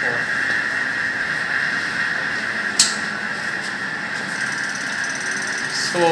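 Steady mechanical whine of laboratory equipment running, with a single sharp click about three seconds in.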